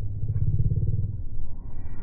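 Low rumble of a motor vehicle engine, strongest in the first second and then easing off.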